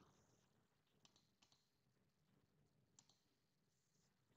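Near silence, with a few faint computer mouse clicks about a second in and again near three seconds.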